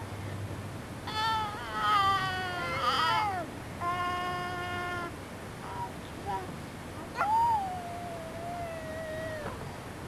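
An infant's high-pitched squeals and vocalizing. A wavering run of squeals comes about a second in, then a steady held note around four seconds, then a long squeal that falls and levels off around seven seconds.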